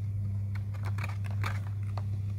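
A few light, scattered taps and rustles of a paper puppet being handled, over a steady low hum.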